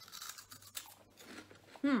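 Crunching of a puffed cheese snack being bitten and chewed, in scratchy bursts. A short falling 'hmm' comes near the end.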